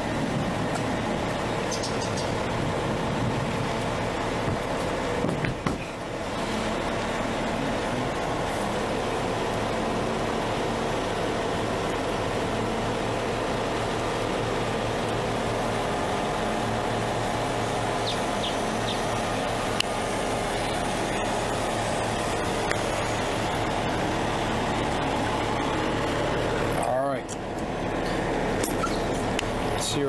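Steady mechanical hum from the motorhome's machinery, even throughout, with a brief drop near the end.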